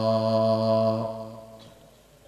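A man's voice chanting Quran recitation, holding the final long note of the verse on one steady pitch. About a second in the note ends and fades away.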